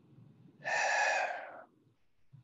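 A man's single loud breath into a close headset boom microphone, a noisy rush of air lasting about a second that tails off.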